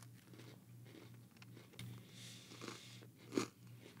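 Faint crunching and chewing of Coke-flavored Oreo sandwich cookies, a few soft bites with a sharper crunch about three and a half seconds in, over a low steady hum.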